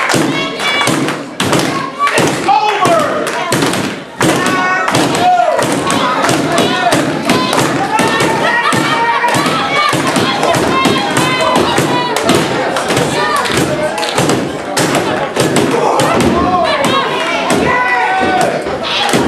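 Repeated thuds of wrestlers' bodies and strikes landing on the wrestling ring's mat, many sharp hits through the whole stretch, with spectators' voices shouting and calling out over them.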